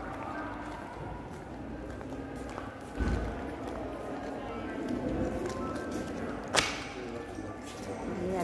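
Indistinct voices and faint music echoing in a large concrete hall, with a dull thump about three seconds in and a sharp knock near the end.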